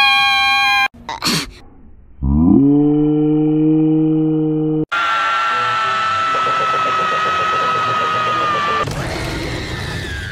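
Cartoon screams cut one after another. A brief high held tone comes first, then a low drawn-out groan that slides up and holds for about two and a half seconds. Then SpongeBob SquarePants gives one long high-pitched scream lasting about four seconds, and another scream takes over near the end.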